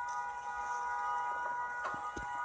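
A continuous, unwavering tone made of several pitches sounding together, like an alarm held on, without a break.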